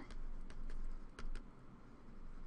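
A stylus tapping and scraping on a tablet screen while handwriting is written: a few irregular clicks over faint background noise.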